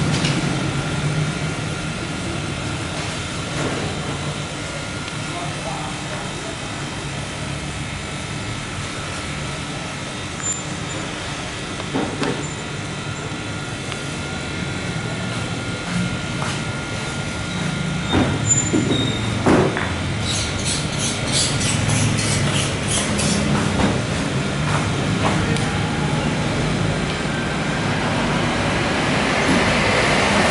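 Steady background of indistinct voices over a low rumble of traffic, with a few sharp clicks in the middle.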